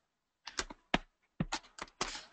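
Computer keyboard keys being pressed: a run of short, sharp clicks in irregular groups, more of them in the second half.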